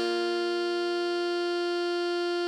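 Alto saxophone melody holding one long note, written D5 (sounding concert F), over a held B-flat major chord on keyboard.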